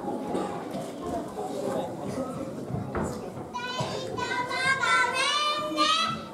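A low murmur of young children's voices. About three and a half seconds in, a group of young children starts voicing lines together in high, clear voices, rising and falling in pitch.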